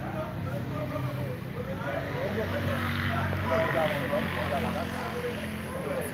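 Several people talking indistinctly in the background over a steady low hum.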